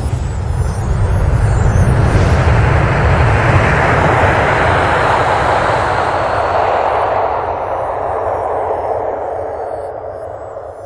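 A long rushing whoosh over a deep rumble, a logo-animation sound effect. It swells over the first few seconds, peaks near the middle and slowly fades away.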